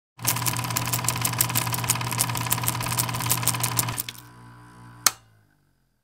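A mechanical clatter: rapid, even clicking at about eight a second over a steady hum. It winds down about four seconds in and ends with one sharp click about five seconds in.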